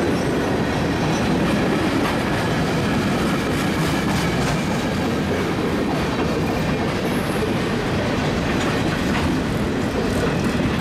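A freight train passing at close range: the steady noise of steel wheels rolling on the rail, with faint ticks as gondola and covered hopper cars go by.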